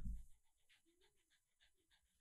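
Shih Tzu panting softly, a quick, even run of faint breaths. A low thump dies away in the first moment.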